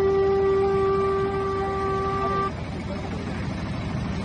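A conch shell (shankh) blown in one long, steady note that stops about two and a half seconds in.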